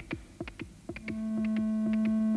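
Electronic synthesizer music: a quick pulsing beat, each pulse dropping in pitch, at roughly four a second. A sustained synthesizer note enters about a second in.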